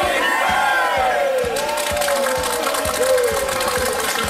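A group of people cheering and shouting together in long, falling whoops, over background music with a steady beat.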